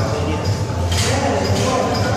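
Indistinct voices over a steady low hum in a large, echoing gym hall.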